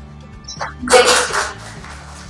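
A single short, loud, breathy vocal outburst from a person close to the microphone about a second in, lasting about half a second.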